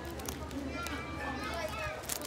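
A child's high-pitched voice talking in the background, starting about a third of the way in, with a faint rustle of plastic wrapping being handled before it.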